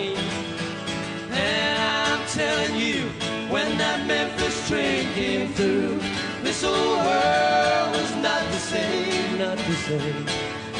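Live country band music with an acoustic guitar, the melody carried in long held notes that bend slightly in pitch.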